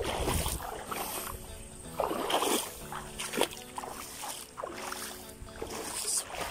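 Water splashing and sloshing in irregular strokes about a second apart, as of someone wading through shallow water, over soft background music.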